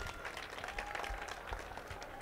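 Scattered audience applause: a number of people clapping irregularly, fairly faint.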